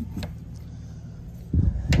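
Wind rumbling on the microphone, louder in a gust near the end, with a light click from a steel gate latch and rubber tie-down strap being handled about a quarter second in.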